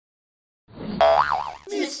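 Silent at first, then about a second in a cartoon 'boing'-type sound effect whose pitch swings up and down. A voice begins speaking near the end.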